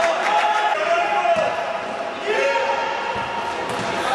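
Futsal match in a reverberant indoor hall: players and spectators shouting and calling over a continuous murmur of crowd voices, with a few thuds of the ball on the court floor.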